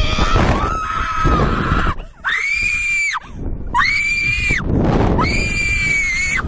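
Riders screaming on a SlingShot catapult ride: a held scream near the start, then three long high-pitched screams of about a second each. A steady low rushing rumble of wind on the microphone runs underneath.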